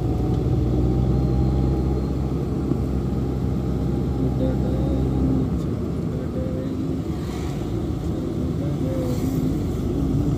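Engine and road noise of a moving road vehicle, heard from inside it: a steady low hum that eases off about halfway through.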